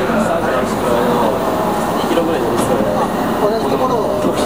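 Indistinct voices talking over the steady running noise of a commuter train, heard from inside the car.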